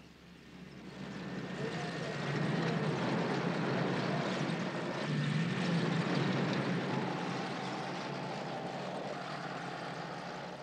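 Tank engines running with a steady, heavy rumble that fades in over the first two seconds.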